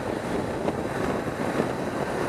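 Steady wind rush over the microphone with the even drone of a 1987 Suzuki GSX-R 750's inline-four engine underneath, the bike cruising at constant speed.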